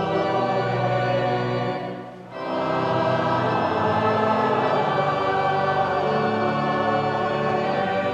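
Closing music: a choir singing slow, held chords of a hymn. The sound dips briefly about two seconds in, then swells back.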